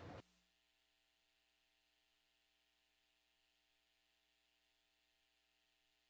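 Near silence: faint background noise cuts off abruptly a moment in.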